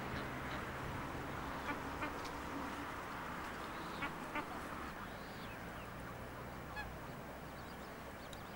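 Waterbirds calling on a lake: short calls come and go several times, one with a rising and falling pitch about five seconds in, over an open-air noise bed and a low hum that fades out about halfway through.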